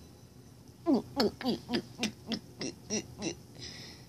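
A child's voice making a quick run of about ten short hooting calls, each falling in pitch.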